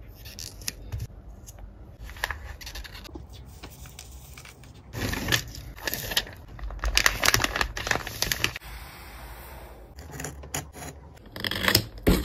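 Hands handling packing paper: crinkling and rustling of wrapping paper, with small taps and scrapes on a desk as a sticker seal is pressed on. The crinkling comes loudest in a run of bursts midway through and again shortly before the end.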